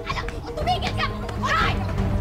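Several voices shrieking and yelling in short, high-pitched cries during a physical scuffle, over steady background music.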